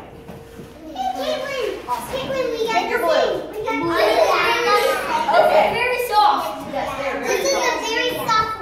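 A group of young children chattering and talking over one another, louder from about a second in, with no single voice clear.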